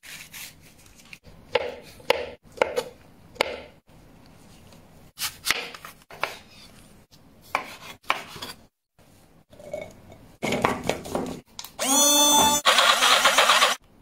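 Food preparation: a series of separate knife cuts and knocks on a cutting board, then, about twelve seconds in, an electric blender whirs up with a rising whine and runs loudly, pureeing fruit.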